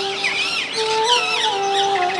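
Many birds chirping and calling, over a slow instrumental melody of held notes that step up and down.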